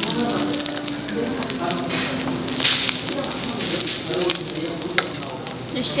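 Meat sizzling and crackling on a tabletop Korean barbecue grill plate, a steady hiss full of small pops, with a louder burst of hiss about two and a half seconds in.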